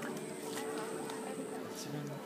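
An insect buzzing steadily, with a thin high whine above it that stops near the end.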